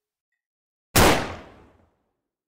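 A single revolver gunshot goes off suddenly about a second in, loud, and dies away over most of a second.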